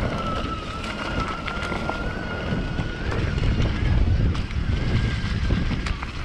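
Electric mountain bike's 1000-watt Bafang mid-drive motor whining at a steady high pitch under throttle, stepping up slightly about three seconds in. Beneath it run wind on the microphone and the rumble of knobby tyres on a dirt trail, with scattered clicks and rattles.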